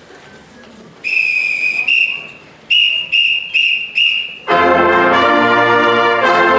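A high whistle gives a count-off: one long blast, a short one, then four short evenly spaced blasts. Right after the last blast, a large pep band of brass and drums comes in loud together on a full chord.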